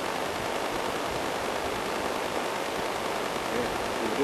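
A steady, even hiss, with no distinct events.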